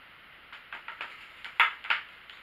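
Handling sounds of a kukri being slid into its scabbard: a few light clicks and rubs, then a couple of louder short scrapes near the end.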